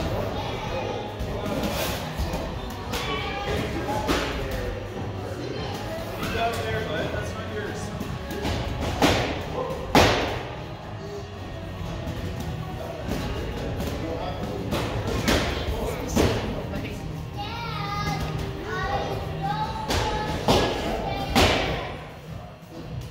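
Children's gloved punches thudding irregularly on hanging Rival heavy bags, the hardest two about nine and ten seconds in. Children's voices and background music run underneath.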